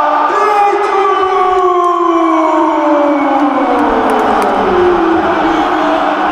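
A football commentator's drawn-out goal cry: one long held shout that slides slowly down in pitch over about five seconds, with crowd noise underneath.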